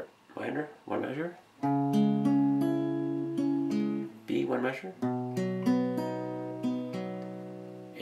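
Steel-string acoustic guitar playing a picked chord pattern, one note after another left ringing: a measure of C sharp minor, then a measure of B.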